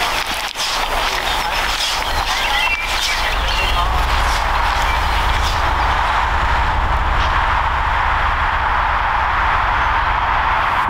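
Outdoor ambience: a steady rumble and hiss, with a few short bird chirps two to three seconds in and some light taps in the first seconds.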